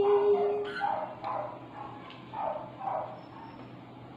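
A held sung note with guitar dies away just after the start, then about six short yelping calls from an animal are spread over the next two and a half seconds.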